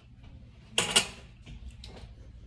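Kitchen utensils being handled at a skillet, with a brief clatter of two quick knocks about a second in, then a few small clicks over a faint, steady low hum.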